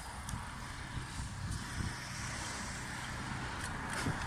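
Road traffic on a busy multi-lane street: a steady hiss of tyres and engines that swells from about halfway through, as if a vehicle is drawing near, over a low rumble.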